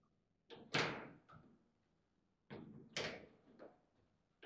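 Foosball table in play: sharp knocks and clacks of the ball against the plastic figures, rods and table walls, in two quick bursts, the loudest just under a second in.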